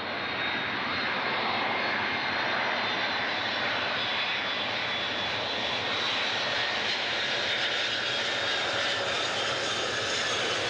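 Boeing 747 jet airliner on final approach with its landing gear down: its four engines running with a loud, steady rush and a high whine. The sound grows over the first second, then holds steady.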